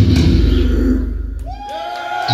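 A live band with electric guitars and bass plays loudly, then stops about a second in as the song ends. Shortly after, two long tones slide up and hold.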